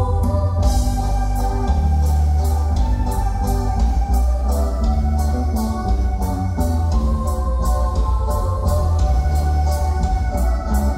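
Dance music led by sustained, organ-like electronic keyboard chords over a heavy bass line, with a steady high cymbal beat of roughly three strokes a second.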